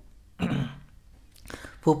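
A man clearing his throat once, briefly, about half a second in, in a pause between spoken words; speech resumes near the end.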